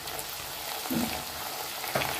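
Hot oil sizzling steadily under potato cubes and soaked sago pearls frying in a pot, a quiet continuous hiss.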